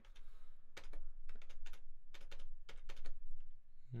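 Typing on a computer keyboard: an irregular run of short key clicks, starting about three quarters of a second in.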